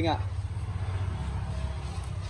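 Low, steady rumble of a motor vehicle's engine running, dropping slightly in pitch about a second in.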